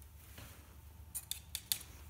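A paintbrush dipped into a small clear cup of water, knocking against the cup's side: several sharp, light clicks a little past the middle, over a low steady room hum.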